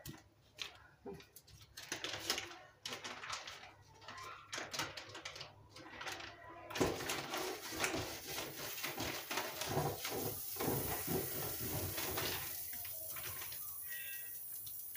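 Bread and sucuk being handled on an electric toast press, with small knocks and clicks. About seven seconds in the lid is pressed shut and a steady crackling sizzle starts as the sucuk toast begins cooking between the hot plates.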